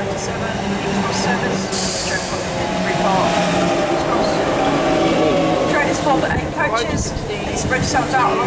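Class 365 electric multiple unit running in and braking alongside the platform: a steady running hum with whining tones that slide downward as it slows, and a short hiss about two seconds in.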